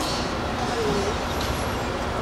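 Steady low rumble with a hiss: the background noise of a large auditorium hall, with no speech over it.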